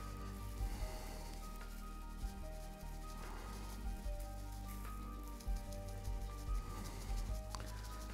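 Soft background music of held notes that change pitch every half second or so. Under it, a faint patter and rustle of leaf scatter being shaken from a plastic bag onto a glued model tree and a tray.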